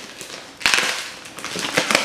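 Packing tape being ripped and peeled off the top of a cardboard shipping box by hand: a loud crackling rip about half a second in, then shorter scratchy crackles near the end.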